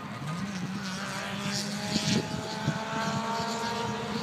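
Saab 93F's three-cylinder two-stroke engine running on the track, its pitch jumping up just after the start and then climbing slowly as it accelerates, with a few gusts of wind on the microphone.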